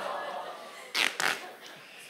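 Black tape being pulled off a roll as it is wrapped around a person's body. A rasping pull fades at the start, then come two short, sharp rips about a second in.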